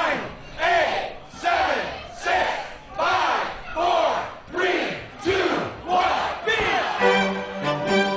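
Men shouting a rhythmic chant into microphones over a public-address system, with a crowd joining in: about one loud call every three-quarters of a second. Music comes in near the end.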